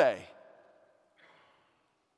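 A man's voice finishing a spoken word, its echo dying away in a reverberant room, then a faint breath about a second later before a pause.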